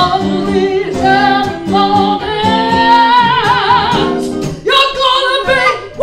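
Live acoustic blues: two acoustic guitars strumming chords under a lead melody from a harmonica and a woman's singing, with a long wavering note near the middle.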